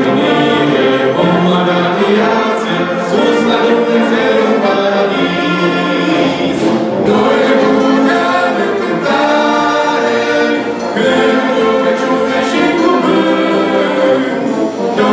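Church brass band of trumpets, trombones, horns and tubas playing a hymn in held chords, with a choir singing along.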